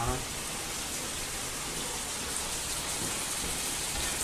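Ground sausage frying in a skillet, a steady sizzling hiss.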